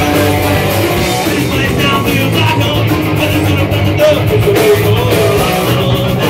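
Punk rock band playing live and loud: electric guitar, bass and drums, with vocals over them.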